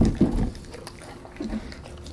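A German Shepherd eating crumbs off a tabletop close to the microphone, licking and chewing. There are two loud mouth sounds within the first half second and a softer one about a second and a half in.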